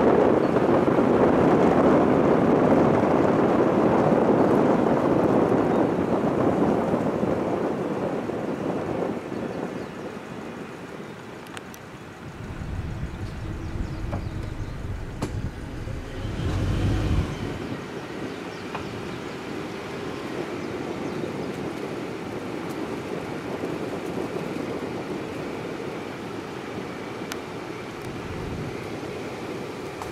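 Steady rushing noise of air and tyres from a slowly moving vehicle, loudest for the first several seconds and then easing off, with a deeper rumble for a few seconds near the middle.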